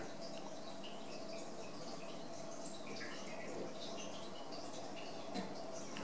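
Faint, scattered little crackles and ticks of rosin-core solder melting onto a female RCA plug's terminal under a soldering iron tip, over a steady low background hum.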